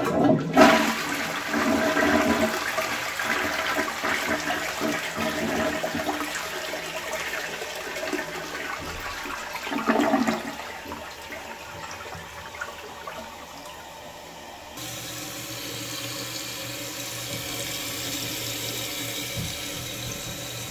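A 2003 Crane Rexmont gravity tank toilet flushing: water rushes suddenly into the bowl, surges again about ten seconds in as the bowl drains, and about fifteen seconds in gives way to a steady hiss of refilling. The siphon is slow to take hold.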